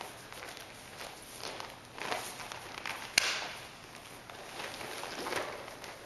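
Bare feet and bodies moving on padded exercise mats during an aikido throw and pin, with one sharp slap about three seconds in, the loudest sound.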